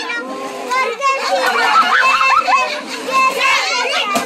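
Many children's voices calling out and chattering over one another at once, fairly loud throughout.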